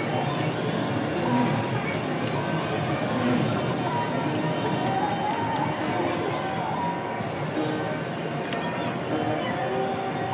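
Casino floor din: electronic slot machine tones and jingles sounding in short held notes over a steady background murmur, with a few sharp clicks as the spin button is pressed and the video reels spin and stop.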